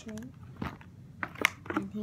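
Plastic handling: a few sharp clicks and crinkles from a vinyl toy purse and a clear plastic case being picked up and moved, the loudest about one and a half seconds in, with brief speech at the start and end.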